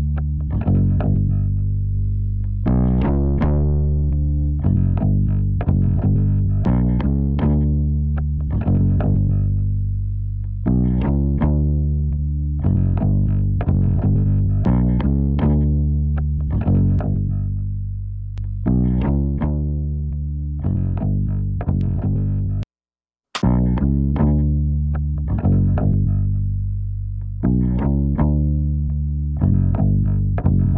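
A music track led by a plucked electric bass line, played back through a Pultec-style EQ plugin, with each note ringing and dying away. The playback cuts out for a moment about two-thirds of the way through.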